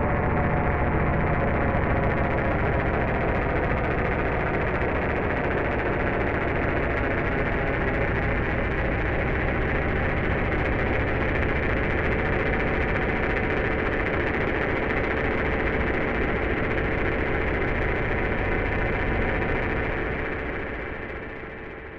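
Alesis Fusion synthesizer playing a dense, noisy drone texture, with a steady held tone coming in about halfway through and a fade beginning at the very end.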